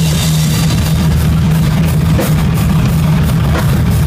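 Heavy metal band playing live: electric guitars, bass and a drum kit in a loud, dense, continuous wall of sound, heavy in the low end.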